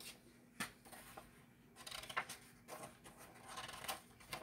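Paper pages of a handmade notebook being turned by hand: a few brief, soft flicks and rustles of paper.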